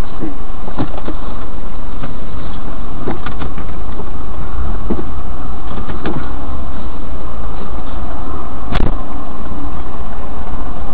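Car driving, with a loud, constant low rumble of engine and road noise as picked up by a dash or in-car camera. Several sharp knocks are scattered through it, and the strongest comes near the end.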